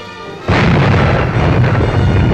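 A 1921-built 16-inch naval gun firing a Martlet research shell: one sudden loud blast about half a second in, rumbling on for about two seconds, over music.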